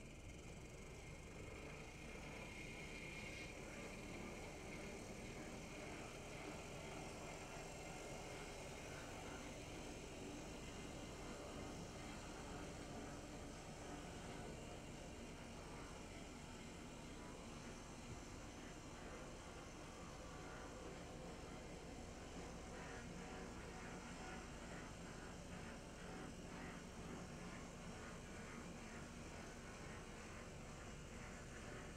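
HO-scale brass F7 diesel model's electric motor and gearing running quietly as it rolls along the track, a low steady hum and hiss with a few faint clicks in the later part.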